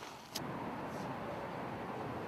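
A sharp click about a third of a second in, then steady outdoor traffic noise, an even low hum of distant cars.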